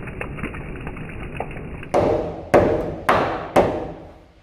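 Rain falling on muddy ground and gravel, a steady hiss, for the first two seconds. Then four hammer blows about half a second apart, nailing wooden blocking between floor joists, each blow ringing out briefly.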